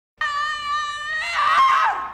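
A woman in labour screaming: one long high-pitched scream that starts abruptly, holds one pitch for about a second, then wavers and grows louder before it breaks off at the end.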